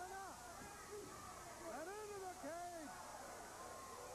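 Drawn-out calls from a high-pitched voice, each rising then falling in pitch over about half a second: one at the very start and two more around the middle, over steady tape hiss.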